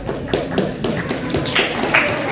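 A quick series of sharp taps, about four a second, over voices talking in the room.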